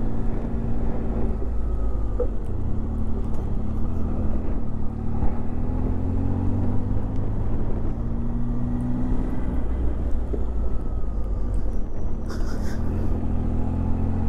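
Tiger adventure motorcycle's engine running steadily at low road speed, its pitch rising and falling slightly as the throttle changes, with road and wind noise from the rider's position. A brief hiss near the end.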